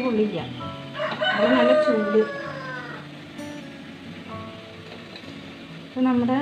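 A single long call begins about a second in and lasts just over a second, followed by faint steady background music.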